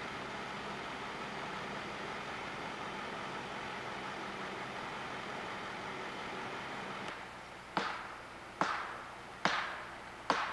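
Steady road and engine noise of a slow-moving vehicle, with a low hum under it. About seven seconds in the noise drops away, and four sharp clicks follow, evenly spaced a little under a second apart, each dying away quickly.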